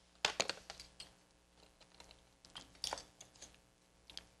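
Light taps and clicks of small metal tools and nails on a leaded-glass panel as a scrap-lead stop is pinned in place. There is a cluster of taps just after the start and another about three seconds in.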